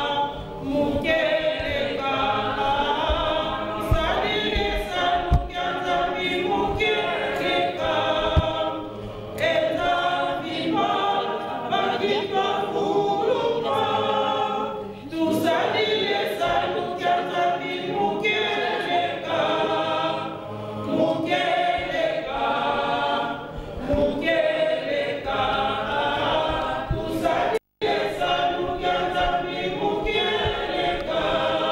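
A choir singing a cappella, a woman's voice amplified through a microphone leading the group. The sound cuts out completely for a moment near the end.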